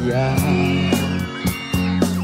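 Live band accompaniment of a Thai pop duet: held instrument notes with drum hits, as a sung line ends on its last word at the start.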